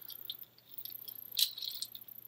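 Small clicks and rustles from an action figure being handled and turned in the hands, with one sharper click about one and a half seconds in.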